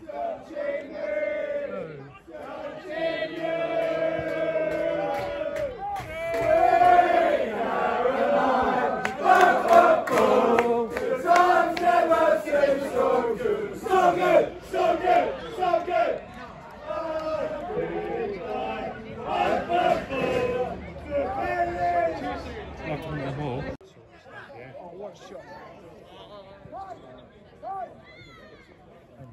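Football supporters singing a terrace chant together, loud and close. It cuts off suddenly near the end, leaving quieter background voices.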